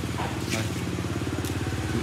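A small engine idling steadily with a fast, even pulse.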